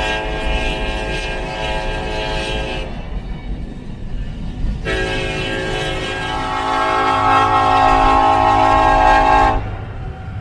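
A horn sounds a chord in two long blasts. The first stops about three seconds in, and the second runs from about five seconds in until shortly before the end, louder in its second half, over a steady low rumble.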